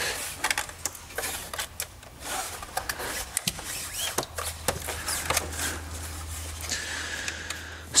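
Scattered light clicks and taps from hands handling a large soundbar and its removed grille on a countertop, over a low steady hum.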